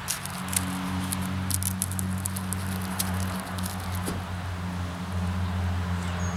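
Hands working a C-A-T combat tourniquet on an arm: scattered small clicks and rustles of the nylon strap and plastic windlass, thickest in the first two seconds. A steady low hum runs underneath.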